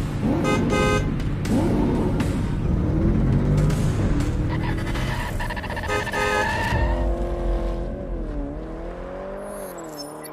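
Car sound effects in an intro: an engine revving, with tires squealing briefly near the start and again around the middle. Toward the end the engine note slides down and back up as it fades away.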